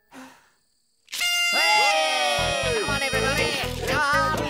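A party blower honks loudly with a buzzy tone about a second in, followed by upbeat cartoon music with a steady beat.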